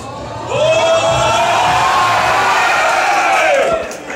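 Several voices raise one loud, drawn-out shout together. It rises at the start and drops away after about three seconds.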